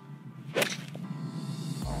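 Golf iron swung on a low punch shot: one quick swish and sharp strike of the ball off the turf about half a second in.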